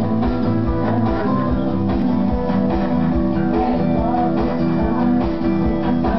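A band's song with strummed guitar over a steady beat.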